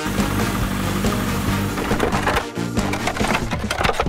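A dense clattering and crunching of many small hard objects tumbling together, a cartoon sound effect of plastic eggs being scooped by an excavator bucket, over cheerful background music.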